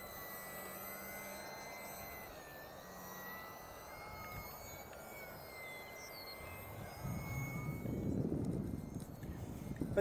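Electric Shock V2 RC aerobatic plane's outrunner electric motor and propeller running, a thin high whine that dips slightly and rises again as the throttle changes. From about seven seconds in, a low wind rumble on the microphone grows louder.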